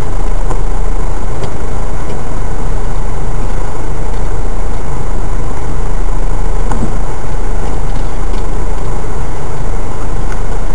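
Four-by-four's engine running loud and steady as it drives down a rutted dirt lane, with a few faint knocks.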